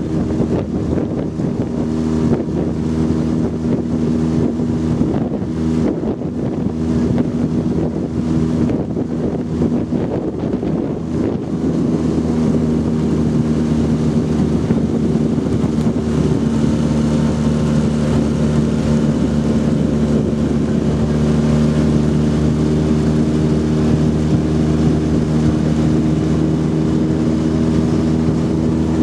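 Outboard motor of a coaching launch running steadily at cruising pace alongside rowing shells, with wind buffeting the microphone during the first half; the engine note settles and steadies about halfway through.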